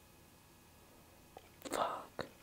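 A short breathy, whispered voice sound close to the microphone near the end, after a faint click.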